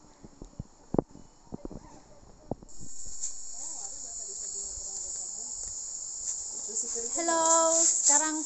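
Night insects chirring in a steady high-pitched drone that grows louder about three seconds in. A couple of sharp knocks come in the first few seconds.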